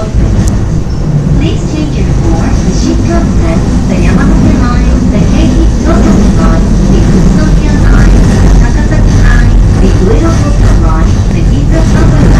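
Rumble of a Joban Line train running, heard from inside the carriage, growing louder about four seconds in, with voices talking over it throughout.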